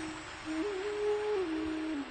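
Soft background music under a pause in the discourse: a slow melody of long held single notes, stepping up in pitch about half a second in and back down near the end.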